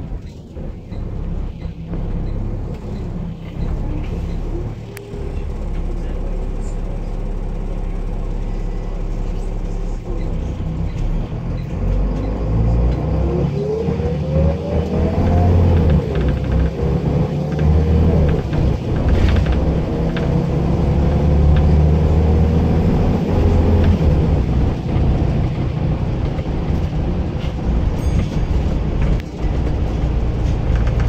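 Bus engine and drivetrain heard from inside the passenger saloon: a steady low rumble, with a rising whine from about twelve seconds in as the bus gathers speed, then a steady drone.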